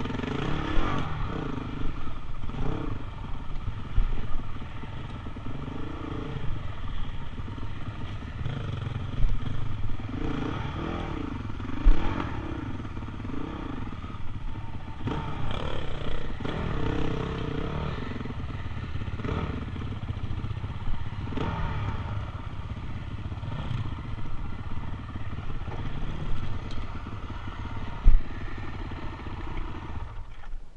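Honda CRF 450X single-cylinder four-stroke dirt bike engine running on a rough trail, its pitch rising and falling with the throttle again and again. The bike clatters over the terrain, with a few sharp knocks, the loudest near the end.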